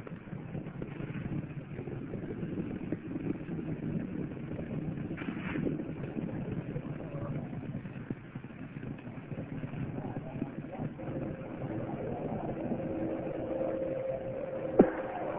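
Steady rumbling noise with no speech, a brief louder rush about five seconds in, and a faint steady hum over the last few seconds.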